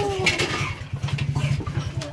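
A small engine running steadily with a fast, even low throb, with a short bit of voice near the start.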